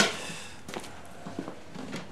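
A sharp knock right at the start, then a few soft, spaced footsteps of someone walking away.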